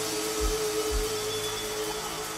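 Ambient electronic music from hardware synthesizers: a held synth drone over a hiss of noise, with two deep kick drum thumps about half a second and a second in.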